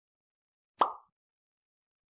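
A single short, sharp sound effect a little under a second in, fading out within about a third of a second.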